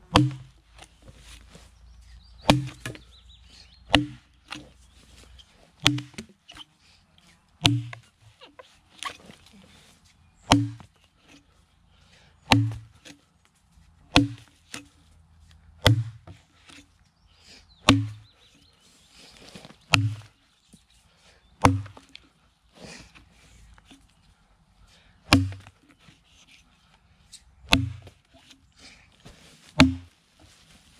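An axe chopping into a log, about fifteen strokes roughly two seconds apart, each a sharp crack with a dull thud as the bit bites into the wood.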